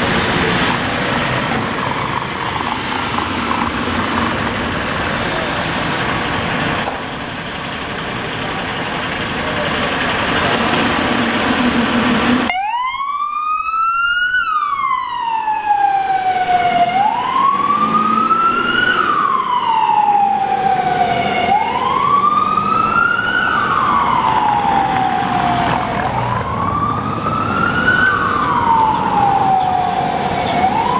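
Engine and street noise as the Mercedes-Benz Atego fire engine leaves its station. About twelve seconds in, after a sudden break, its siren wails in a slow rise and fall of pitch, repeating about every four and a half seconds.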